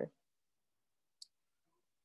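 Near silence broken once, about a second in, by a single faint, brief click, the click of a computer mouse button.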